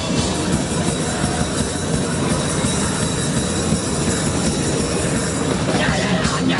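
Hardcore punk band playing live, with heavily distorted guitars and fast drumming merging into one dense, continuous wall of sound. It is recorded close up in a small, crowded room.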